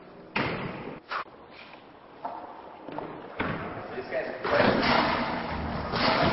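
Two sharp thuds echoing in a large hall, the first about half a second in, the second a little over a second in. Then people's voices and shouting build up over the second half.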